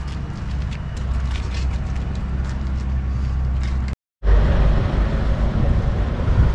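Steady low outdoor rumble with no clear mechanical rhythm, broken by a sudden drop to silence about four seconds in, after which it comes back a little louder.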